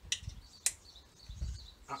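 Small plastic weather-vane parts being pushed together by hand: a brief scrape as the little round arm slides into its fitting, then one sharp click about two-thirds of a second in as it seats tightly.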